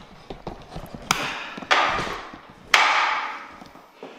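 Gym weight equipment clanking: three sharp metal hits, each ringing out briefly, as the leg press is set up.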